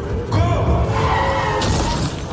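Car tyres squealing as a sedan skids across a street, the squeal wavering in pitch, over a film score. A harsher rushing noise joins near the end.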